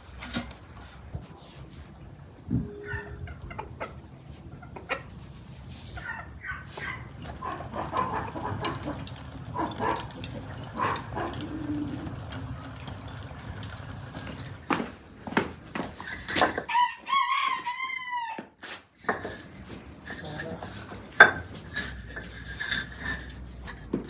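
A rooster crows once, one long call a little past three-quarters of the way through, over scattered sharp clicks and crackles from charcoal being lit.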